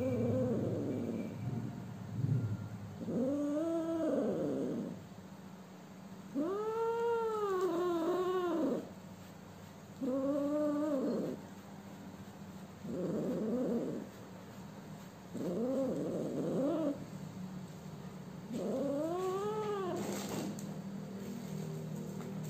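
A sick, underweight kitten meowing repeatedly in protest while it is held and has its mouth wiped: about seven long, drawn-out cries, each rising and then falling in pitch, a few seconds apart.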